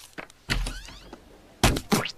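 Cartoon sound effect of a fist thumping down on mustard packets on a desk, twice about a second apart.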